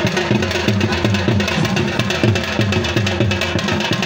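Music driven by drums, with a fast, steady beat of low pitched drum strokes.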